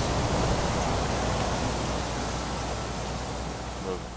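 Steady, even outdoor background hiss with a faint low hum, slowly fading.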